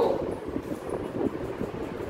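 Steady background room noise with faint scattered taps and rustles, at a lower level than the speech around it.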